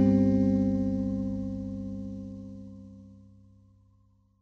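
The last chord of the song ringing out on an electric guitar, with a low bass note beneath it, wavering slightly as it fades away to silence just before the end.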